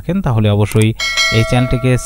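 A bright bell chime, the sound effect of a subscribe-button and notification-bell animation, rings out about halfway through and holds for about a second over a voice speaking.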